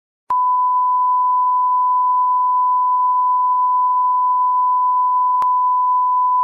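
A steady, pure high-pitched electronic beep, like a test tone, held at one unchanging pitch. It starts with a click just after the opening, and there is a faint click about five seconds in.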